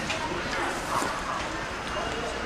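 Outdoor market ambience: distant, indistinct chatter of vendors and shoppers, with a few light knocks.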